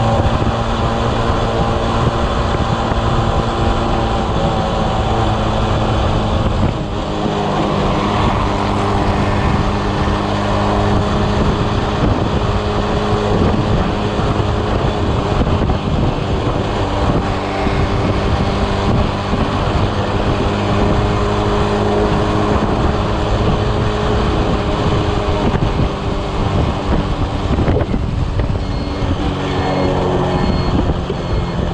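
Motor scooter engine running at a steady cruise while being ridden, with strong wind rushing over the microphone.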